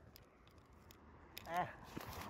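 Near silence with a few faint clicks, broken about one and a half seconds in by a short vocal sound from a person.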